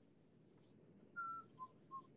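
Faint microphone hiss, then about a second in a few short whistled notes: one higher held note followed by two brief lower ones.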